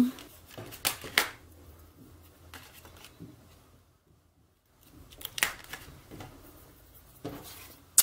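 Paper, card and ribbon being handled: a few brief rustles and taps as a ribbon is pressed down onto card with tape, with a near-silent pause in the middle.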